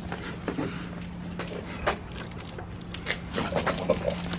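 A dog on a leash moving out through a storm door onto snow: scattered scuffs, clicks and jingles, over a steady low hum.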